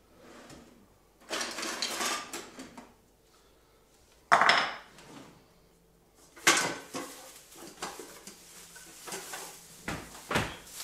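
Metal kitchenware clattering as a drawer of pans and utensils is rummaged through, with a sharp knock about four seconds in and another about six and a half seconds in.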